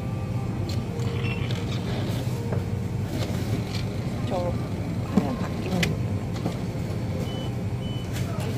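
Jura automatic espresso machine running while it dispenses espresso onto an iced latte, a steady low hum, with one sharp click about five seconds in.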